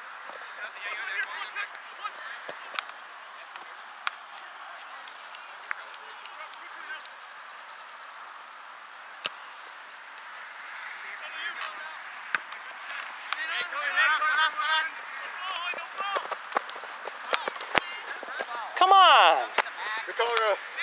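Voices of players and spectators calling out across a soccer field during play, over a steady outdoor hush. A few sharp knocks come in the first half. The calling grows busier in the second half, with a loud shout near the end.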